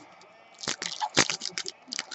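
Foil trading-card pack wrapper crinkling as it is handled and torn open by hand: a run of irregular crackles starting about half a second in.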